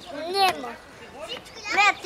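A young child's voice: two short, high-pitched calls, one about half a second in and one near the end.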